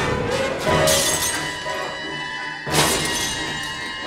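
Tense orchestral film score, with glass shattering twice: once about a second in, and again, louder, near three seconds in.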